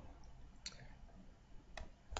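A few faint computer mouse clicks as text on the screen is selected.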